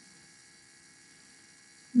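Faint steady electrical hum with low hiss: the recording's background room tone, with a woman's voice coming in right at the end.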